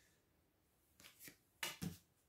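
Tarot cards being laid down on a cloth-covered table: near silence, then a few soft swishes and taps in the second half, the last ones the loudest.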